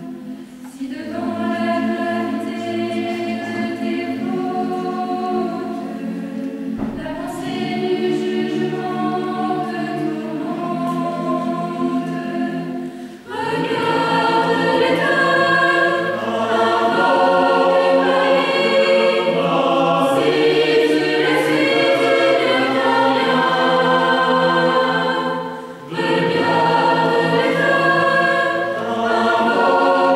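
Mixed choir of young men and women singing in parts, with brief breaks between phrases. The singing grows fuller and louder about halfway through.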